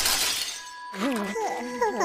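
Cartoon crash effect of ice cracking and shattering under a fallen skater, a loud burst fading away over the first half second. About a second in, a wordless voice follows, sliding up and down in pitch.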